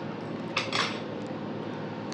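Two short plastic clatters, about a quarter second apart and a little over half a second in, from a plastic takeout sushi tray and its clear lid being handled.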